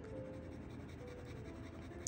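Kakimori brass dip nib scratching lightly across notebook paper as it writes, under soft background music.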